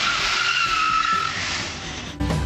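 Car tyres squealing as a sedan slides sideways across wet asphalt: a high squeal over tyre hiss that fades out about a second and a half in.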